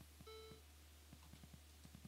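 Near silence, broken by one short, faint computer beep about a quarter of a second in and a few faint clicks.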